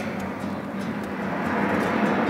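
Steady rushing air noise with a low electric hum, from the fans blowing the plastic art installation.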